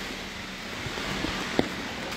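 Steady rushing outdoor street noise with a faint hum, and a single sharp click about one and a half seconds in.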